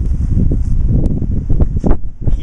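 Wind buffeting the camera microphone: a loud, uneven low rumble, with a few small knocks in the second half.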